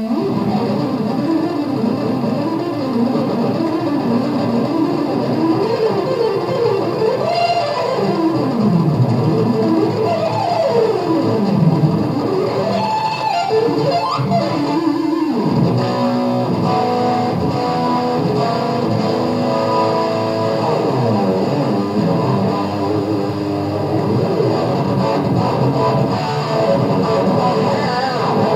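Electric guitar in a live rock concert recording, playing fast runs that sweep up and down in pitch, with little clear drumming behind it.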